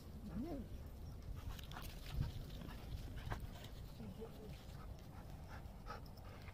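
Dogs at play: a short whine rising and falling in pitch just after the start, and a softer one about four seconds in, with scattered faint clicks and scuffs.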